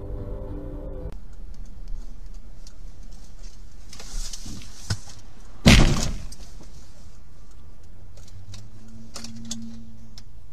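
Dashcam audio from inside a car: steady engine and road noise, broken about six seconds in by one sudden, loud crunching impact of a collision with the camera car.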